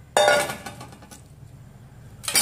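A stainless steel bowl set down with a clatter about a fifth of a second in, ringing briefly as it dies away; a faint click follows a second in.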